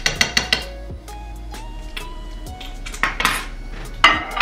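A fork clinking and scraping against a ceramic bowl several times in quick succession in the first half second as mashed potatoes and cheese are stirred. Near the end comes a brief rush of noise as a microwave door is opened.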